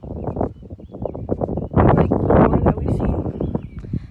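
Wind buffeting a phone's microphone: uneven gusting rumble, loudest for about a second and a half in the middle.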